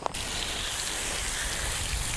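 Garden hose nozzle on a fine mist spray, water hissing steadily onto a pile of freshly dug potatoes on grass; it comes on suddenly just after the start.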